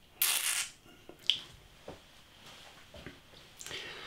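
A man's breathing and mouth sounds while tasting a beer: a short breathy exhale about a quarter second in, a sharp lip or tongue click about a second later, then a breath drawn in near the end.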